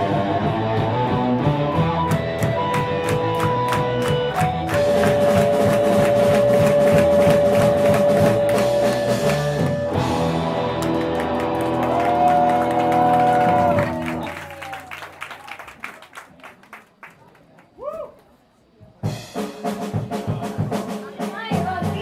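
Live rock band with electric guitars and drums playing loudly. About two-thirds through, the music dies away to a few quiet seconds, then the instruments come back in near the end.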